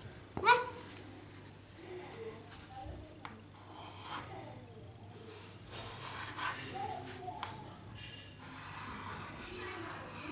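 Chalk scraping and tapping quietly on a blackboard as numbers are written by hand, with a few light clicks. Soft murmured voices come and go.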